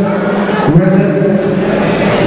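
A man's voice chanting over the sound system, held on long, drawn-out notes.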